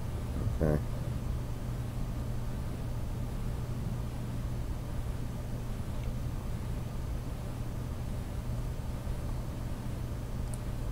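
Steady low hum with an even background hiss: the recording's own background noise.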